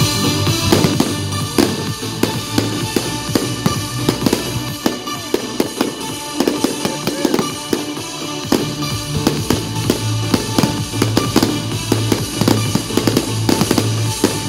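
A fireworks barrage: aerial shells bursting one after another, dozens of sharp bangs and crackles in quick succession, with music playing throughout.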